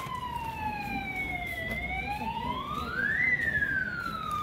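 A siren wailing, its pitch sliding slowly down, then rising about halfway through and falling again near the end.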